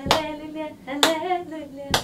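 A woman singing a Zulu gospel song unaccompanied, with hand claps on the beat about once a second: three claps in all, at the start, about a second in, and just before the end.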